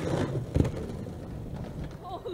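Skateboard wheels rolling with a steady rumble across a sloped roof, with one sharp knock about half a second in.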